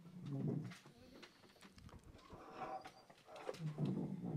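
Faint, indistinct murmur of several people talking in a meeting hall, with a few light knocks and clicks.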